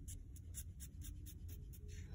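Blue felt-tip marker hatching short lines on watercolor paper: a faint, rapid run of scratchy strokes, about five or six a second.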